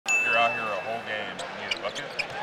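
Referee's whistle blown in one steady, high-pitched blast lasting about a second, over the chatter of an arena crowd. A few short sharp sounds from the court follow near the end.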